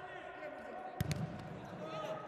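Futsal ball struck twice in quick succession about a second in, with sneakers squeaking on the indoor court floor.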